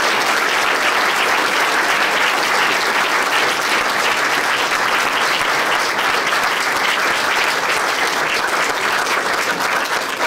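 Audience applauding: a roomful of people clapping steadily, easing off near the end.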